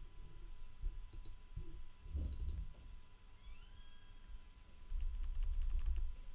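Computer clicks and key presses while editing on screen. There are a few sharp clicks about one and two seconds in, then a quick run of light ticks over low thuds in the last second.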